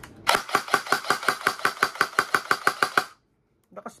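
A G&G ARP 556 2.0 airsoft electric rifle, fitted with an ETU and a speed trigger, fires a rapid string of about twenty shots at roughly seven a second. The string stops abruptly about three seconds in.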